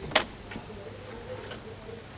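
A single sharp click as the push-button automatic door opener is triggered and the door releases, followed by a faint steady hum from the door's opener drive.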